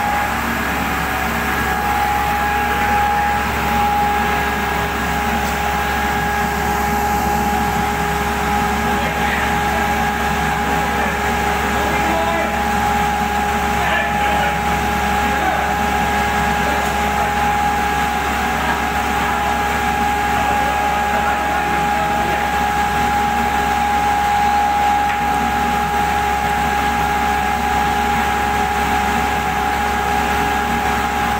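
Blower of a foundry's fuel-fired crucible furnaces running, a steady drone with a constant high whine and no breaks.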